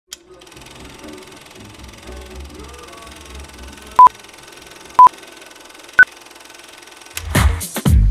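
Film countdown leader beeps: three short beeps a second apart, the first two at the same pitch and the third higher, over a faint hiss. About seven seconds in, a house music track starts with a heavy beat.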